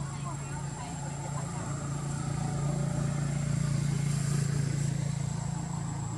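A motor vehicle engine droning, growing louder through the middle and easing off near the end as it passes by.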